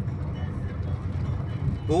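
Steady low rumble of a vehicle's engine and tyres on a graded dirt road, heard from inside the cabin. A voice starts near the end.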